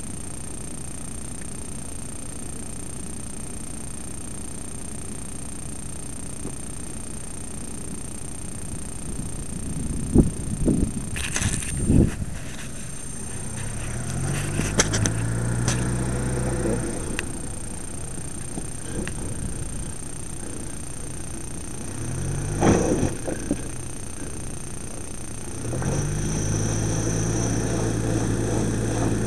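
Mitsubishi Pajero's engine running, then revved hard twice as the 4x4 climbs onto a rock slab. Sharp knocks of tyres and rock come between the revs.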